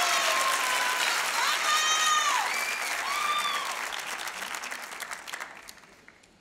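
Studio audience applauding, with a few voices whooping over it; the applause fades away toward the end.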